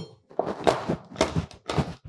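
A cleaver chopping into a whole turbot on a cutting board: four dull knocks about half a second apart.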